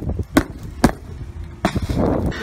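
Hands working at a cardboard shipping box, with a couple of sharp knocks on the cardboard less than a second apart, over the low rumble of wind on the microphone.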